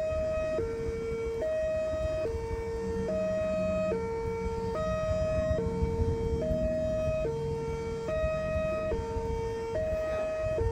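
Small horn loudspeaker of a mini bōsai musen (Japanese disaster-warning PA replica) sounding a hi-lo siren: a high and a low tone alternating evenly, each held just under a second.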